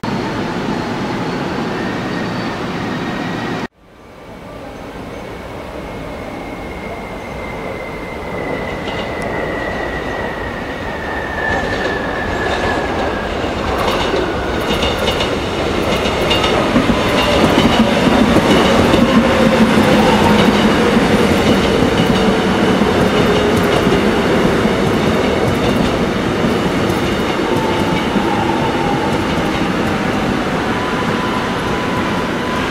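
Korail 311000-series electric multiple unit running past, its motor whine slowly falling in pitch while the rumble grows louder, with repeated clicks of wheels over rail joints. A brief dropout about four seconds in.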